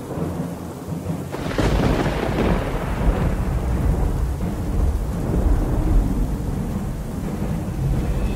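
Thunder: a sudden crack about a second and a half in, then a long low rolling rumble with rain.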